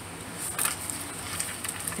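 Paper rustling and sliding as a note card is pushed into a paper envelope pocket and the layered pages are handled, with a few light crinkles about half a second in.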